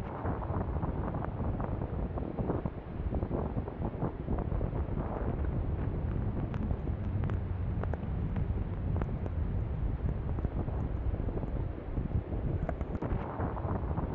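Strong gusty wind rushing and buffeting the microphone in a blizzard, with a few faint ticks.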